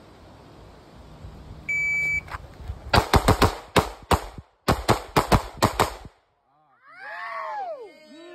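A shot timer beeps once, and about a second and a half later a semi-automatic pistol fires a rapid string of about a dozen shots: one fast burst, a brief pause, then a second burst, the whole run just over four seconds. A voice follows near the end.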